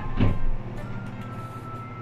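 Soft background music of held notes over a steady low hum, with one short voice sound, like a brief 'uh', just after the start.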